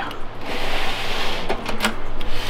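A hand rubbing and fumbling against the metal side panel of an HP ProLiant DL580 G7 rack server, a scraping rub followed by two sharp clicks near the end.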